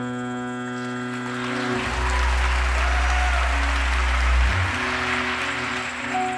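Live jazz piano trio of piano, double bass and drums. Held piano chords give way, about a second in, to a swelling noisy wash under a deep low note that holds for about two and a half seconds. The chords come back near the end.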